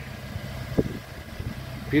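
Car engine idling with a steady low hum. A single short knock comes a little under a second in.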